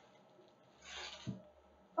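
A brief rustle of a folded fabric item and its packaging being handled and pulled open, about a second in.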